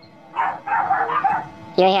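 A dog barking, a short run of barks about half a second in.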